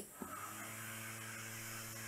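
Small 6 V DC hobby motor with a plastic propeller, switched on through a relay, running with a faint steady hum that sets in shortly after the start.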